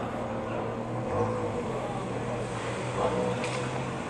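Street ambience: a steady low engine hum from a vehicle or nearby traffic, with faint voices underneath.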